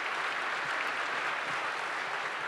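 Audience applauding, the steady clapping of many hands.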